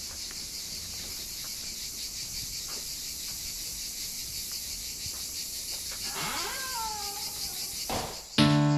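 Steady high-pitched insect chorus with a fine, even pulsing throughout. About six seconds in, a short animal call slides down in pitch over about a second.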